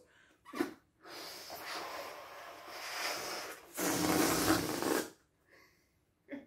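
Breath blown into rubber balloons as a steady airy hiss, then, about four seconds in, a louder rush of air let out of a balloon for about a second.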